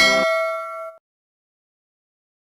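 A bell-like chime from an intro jingle rings out and dies away. The music under it stops just after the start, and the ring is cut off about a second in, leaving digital silence.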